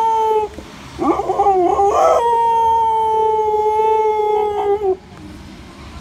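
Siberian husky howling: one howl trails off about half a second in, then a new howl rises and is held long and fairly level until it stops about five seconds in.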